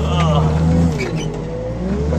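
Wheel loader's diesel engine running, heard from inside the cab, with a whine that rises and falls as the hydraulics work the boom.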